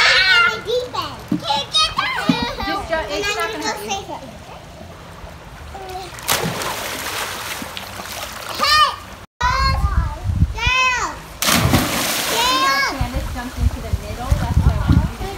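Children playing in a swimming pool: water splashing and high-pitched children's shouts and calls. A splash comes about six seconds in, and there is a bigger spell of splashing near the end.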